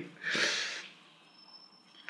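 A man's audible breath, about half a second long, then quiet.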